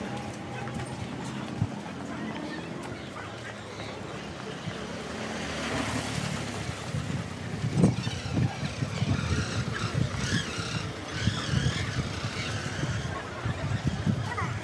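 Outdoor street ambience in a narrow lane: a steady background of traffic with scattered faint voices, and irregular low thumps in the second half.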